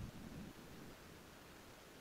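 Near silence: a faint steady hiss on the online-meeting audio line, with a brief low rumble fading out in the first half second.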